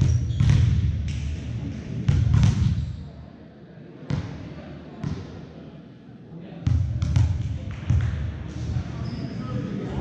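Sharp slaps of a volleyball being hit and bouncing on a hardwood gym floor, about ten spread unevenly with a quieter lull in the middle, echoing in a large gymnasium. Under them are the voices of players and spectators.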